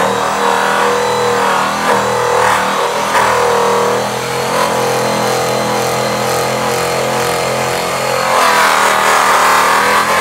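Electric rotary polisher buffing an aluminum truck rim. Its motor whine wavers in pitch as the pad is pressed and eased against the metal, and it grows louder near the end.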